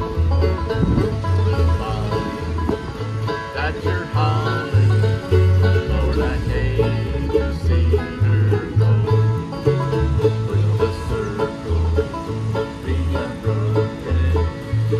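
Acoustic bluegrass band playing: fiddle, banjo, mandolin and guitars over a bass that steps between low notes about twice a second.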